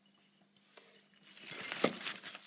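Christmas tree branches and decorations rustling with light clicks and clinks, starting quiet and building in the second half, with one sharper click near the end.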